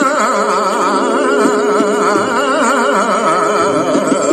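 Male Hindustani classical voice singing raag Basant, holding a phrase decorated with a fast, even shake in pitch, several turns a second, over a faint steady drone.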